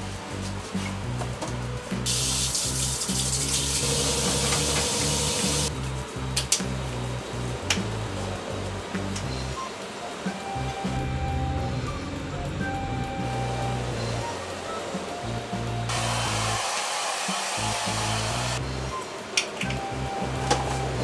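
Hair dryer blowing in two bursts that switch on and off sharply: the first about two seconds in and lasting several seconds, the second near the end. Background music plays throughout.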